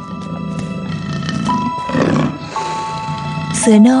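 Soundtrack music with long held notes. About halfway through comes a short growl from the injured tiger cub.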